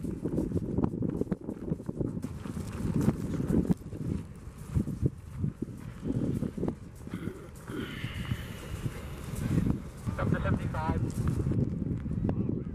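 Indistinct voices over a low, uneven rumbling noise, with scattered small knocks.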